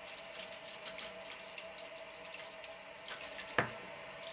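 Water running into a stainless steel sink, a steady splashing hiss, with one louder drip near the end.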